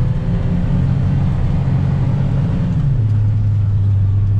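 Farm tractor's diesel engine running steadily while driving, heard from inside the cab as a loud low drone; about three seconds in the sound eases slightly to a lower, smoother hum.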